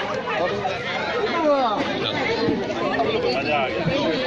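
Several men talking at once: overlapping, indistinct chatter from a group standing close together.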